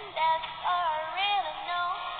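A young woman singing along to a karaoke backing track. Her voice glides between held, wavering notes.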